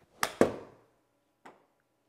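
Pitching wedge striking a golf ball off an indoor hitting mat: two sharp hits in quick succession within the first half second, the second louder, then a faint click about a second later.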